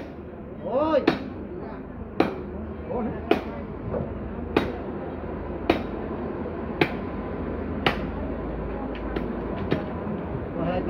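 Machete chopping through a rack of ribs on a wooden stump block: seven sharp, evenly spaced strikes a little over a second apart, then a few lighter knocks near the end.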